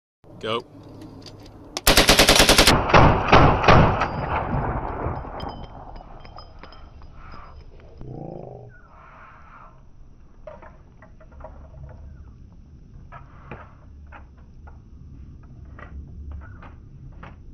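A full-auto burst from a PWS Diablo 7.62x39 rifle about two seconds in: a very fast string of shots lasting under a second. A few more loud reports follow over the next two seconds, then a tail that dies away.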